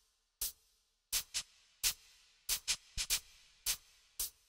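Sparse electronic percussion opening a music track: sharp, clicky hits in a loose rhythm that come closer together, some in quick pairs, each followed by a short faint tone.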